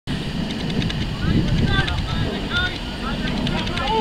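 Footballers shouting and calling to each other on the pitch, short distant shouts over a steady low rumble.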